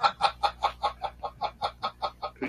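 A man laughing in a rapid run of short, even 'ha' pulses, about six a second.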